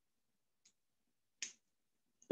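Near silence broken by one short, sharp click about one and a half seconds in, with a fainter tick before it.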